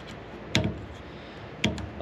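Two short, sharp clicks about a second apart over quiet room tone.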